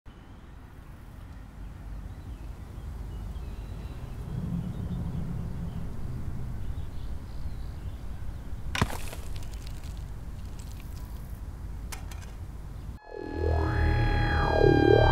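Low rumbling ambient drone that slowly swells, with a sudden sharp sound about nine seconds in and a smaller one about three seconds later. Near the end a synthesizer comes in, its pitch sweeping up and down.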